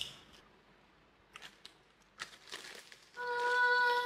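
Faint crunches of potato chips being chewed, a few soft crackles in the first three seconds. Near the end comes a steady held tone, like a hummed "mmm", the loudest sound here.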